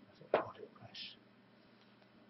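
A man's voice saying a word or two under his breath, with a short whispered hiss about a second in.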